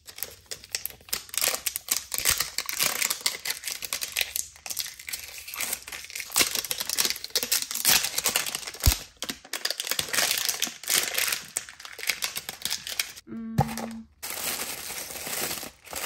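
Plastic wrappers of an LOL Surprise ball crinkling and tearing as they are unwrapped by hand, with irregular rustles and crackles throughout.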